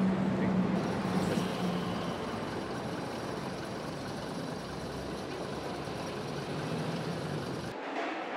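A tram passing close by on a city street, with steady traffic noise. A low hum near the start fades after about two seconds, and the sound cuts off abruptly just before the end.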